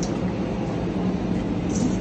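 Steady low mechanical hum with a faint constant tone, the running noise of commercial kitchen machinery.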